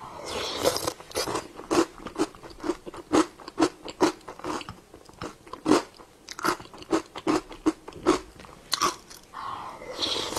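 Close-miked chewing of a spoonful of a milky dessert with crunchy bits, with crunches about twice a second. A wet slurp comes as the spoon goes into the mouth at the start and again just before the end.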